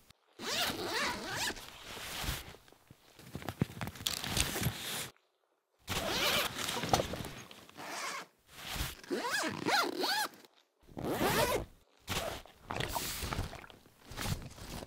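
Zippers on a bike backpack being pulled open and shut: about six separate zips, each one to two and a half seconds long, with short pauses between them.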